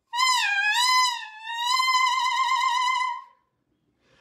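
A clarinet mouthpiece and reed blown on its own, without the rest of the instrument. It gives a high, buzzy squawk whose pitch bends down and back up, then a second held note with a fast wobble, cutting off a little after three seconds.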